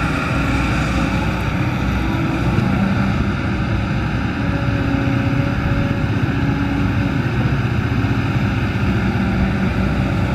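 Kobelco SK200 hydraulic excavator's diesel engine running steadily under working load as the machine swings and dumps a bucket of soil. Its pitch shifts a little as it works.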